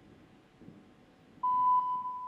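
Faint arena room tone, then about one and a half seconds in a steady, single-pitched electronic beep sounds over the PA and holds: the signal tone that precedes a rhythmic gymnastics routine's music.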